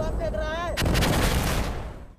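Dubbed gunfire sound effect: a rumbling blast dying away, with one sharp shot just under a second in, fading out near the end.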